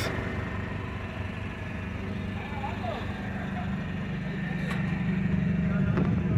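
A pickup truck's engine idling with a steady low hum, growing gradually louder toward the end.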